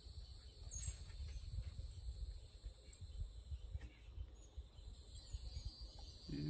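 Faint outdoor summer ambience: a steady high insect drone with a short bird chirp about a second in, over a low uneven rumble on the microphone.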